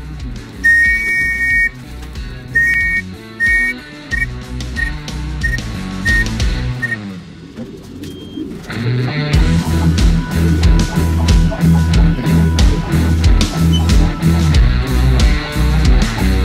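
A hand-held whistle blown in short blasts, a few longer ones then a run of quick even pips, to call a returning racing pigeon down into the loft. Rock music plays underneath and grows much louder about nine seconds in.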